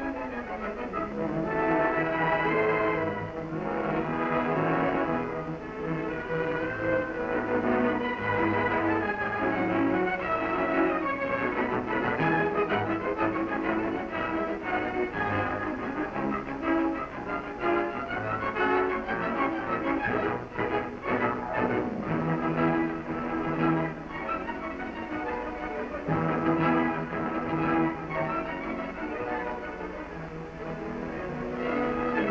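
Orchestral background music with bowed strings, sustained notes moving from chord to chord.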